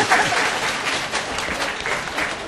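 Audience applause in a hall, dense clapping with a voice or two over it at the start, slowly dying down.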